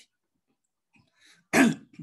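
A man clears his throat once, loudly, about a second and a half in, after a pause.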